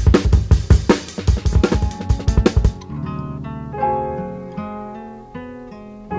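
Sampled drums played back through MPC beat-making software: fast kick and snare hits for about the first three seconds, then a melodic sample of plucked, guitar-like held notes that slowly fade.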